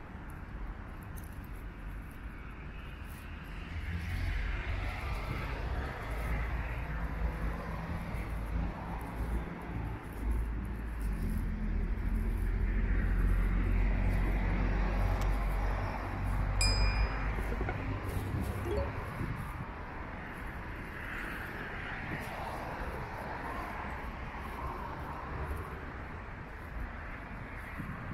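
City street ambience: road traffic running by with a low rumble that swells through the middle and then eases off. A single short, high bell-like ping sounds about two-thirds of the way through.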